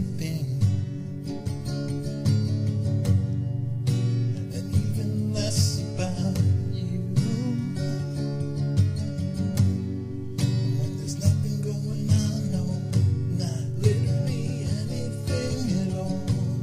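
Music: an acoustic guitar strumming chords steadily.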